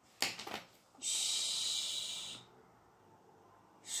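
A woman's long "shh" shushing hiss, held for about a second and a half and then stopping, after a brief faint breathy sound.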